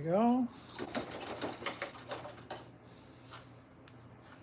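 A short hummed 'mm' rising in pitch, then about two seconds of quick, light clicks and taps, like small hard objects knocking together.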